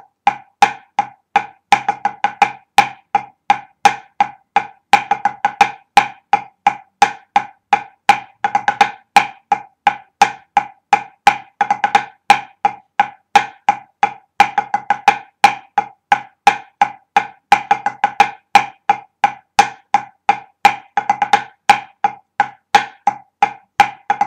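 Drumsticks playing a pipe band snare drumming exercise, the left-hand paradiddle-to-ruff pattern in 9/8 without flams: a steady, rapid stream of sharp, dry strokes with regular accents.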